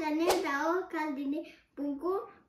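A child talking in short phrases, with one sharp click about a third of a second in.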